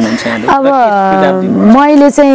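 A woman speaking in an interview, drawing out one long vowel for about a second before going on talking.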